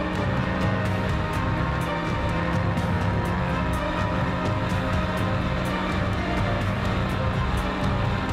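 Background electronic music with a steady beat over sustained low notes.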